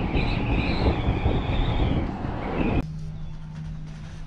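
Cable car gondola riding along the haul rope, heard from inside the cabin: a loud mechanical rumble with a wavering high whine over it. About three seconds in, it drops abruptly to a quieter, steady low hum.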